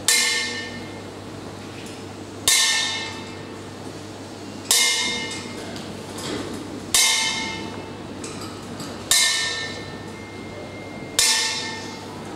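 A boxing ring bell is struck six times, slowly, about every two seconds. Each strike rings out and dies away before the next.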